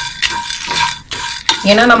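A wooden spatula scraping and stirring grated coconut, dried red chillies and coriander seeds as they roast in a nonstick pan, in a quick run of strokes, about three or four a second.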